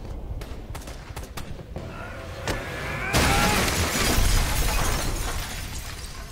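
Action-scene soundtrack of a TV drama: scattered knocks and hits, then a sudden loud crash about three seconds in that runs on as a noisy wash for a couple of seconds before fading.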